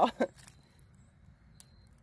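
A voice trails off at the start, with one short sound just after. Then near silence follows for over a second, broken only by one faint tick near the end.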